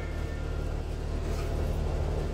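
Steady low mechanical hum of machinery running inside the tool truck, with no distinct knocks or clicks.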